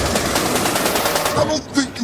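A very fast machine-gun-like rattle of sharp clicks in the edited soundtrack, breaking off about three-quarters of the way through.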